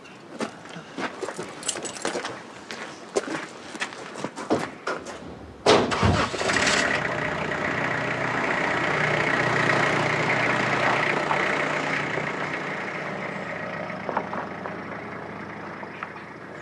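A van's engine starting with a sudden catch, then running steadily and slowly fading away as it drives off. Before it, a run of light clicks and knocks.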